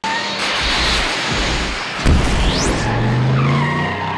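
Loud produced intro soundtrack: a dense rush of sound effects over music, with a heavy hit about two seconds in, a high rising sweep just after, and a rising low tone near the end.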